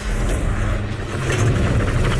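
A loud rushing, rumbling noise effect that swells about halfway through, laid over a cut to a black-and-white flashback.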